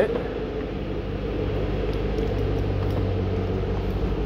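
Chevrolet Camaro ZL1's 6.2-litre supercharged LSA V8 idling steadily on remote start, a low, even drone.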